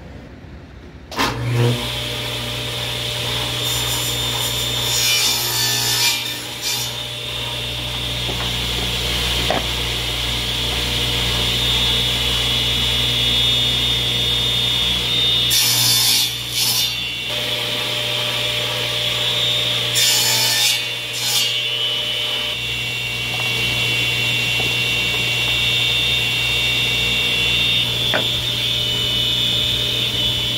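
Table saw switched on about a second in and running steadily with a motor hum and whine. Several louder stretches come as the blade cuts through maple strips, crosscutting them into 15-degree ring segments against a stop block.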